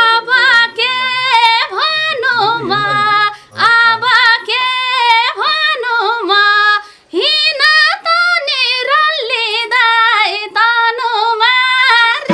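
A woman singing a Nepali folk song (lok geet) solo, in long phrases with a wavering, ornamented pitch, with short breaths about three and a half and seven seconds in.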